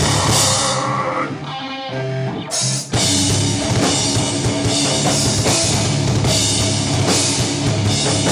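Live metal band playing loud, with a drum kit and electric guitars. About a second in the full band drops back to a thinner sound for a second and a half, then crashes back in together.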